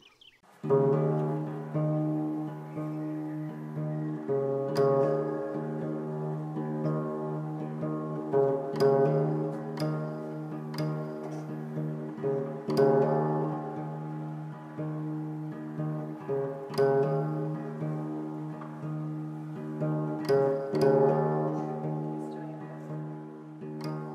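Background music: a plucked guitar tune with sharp accents every few seconds.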